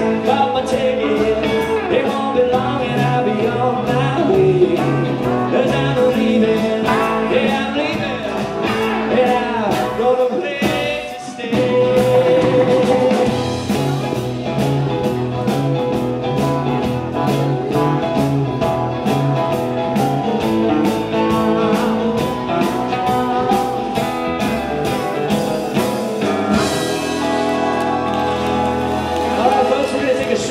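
Live country band playing an instrumental break: electric guitar, upright bass, fiddle, steel guitar and drums over a steady beat. Near the end the band holds one long closing chord with a cymbal wash.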